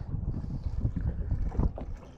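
Wind buffeting the microphone on a boat at sea: an uneven low rumble that swells briefly about one and a half seconds in, with water moving around the hull.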